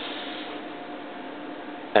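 Steady background noise with a faint, even hum. There is no distinct clink or rattle from the metal scales.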